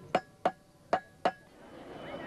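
Cobbler's hammer striking a shoe on a last: four sharp, ringing taps in two quick pairs.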